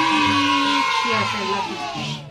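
A long, high, held voice-like cry, easing off near the end, with speech underneath it.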